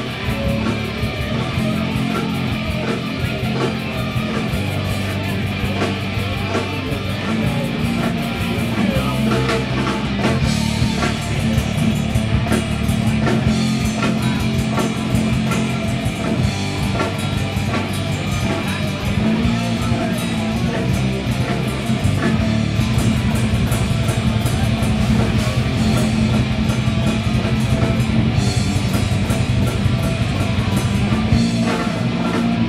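Live rock band playing loud and steady: distorted electric guitars, bass guitar and a drum kit with constant cymbals.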